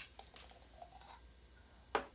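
Faint handling of a small glass beaker as a gloved hand picks it up, with a few soft ticks and one short sharp click near the end.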